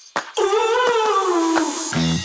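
A single drawn-out howl lasting about a second and a half, its pitch rising slightly and then sliding slowly down.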